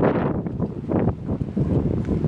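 Wind buffeting the camera microphone outdoors: a loud, low rumble with a few brief knocks in it.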